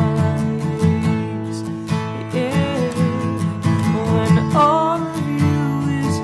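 Steel-string acoustic guitar, capoed at the second fret, strummed steadily through chords of the song in A, with a man's voice singing a wavering melody line over it in the second half.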